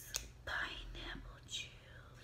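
A single light click of a glass dropper against its bottle shortly after the start, then two short stretches of soft whispering.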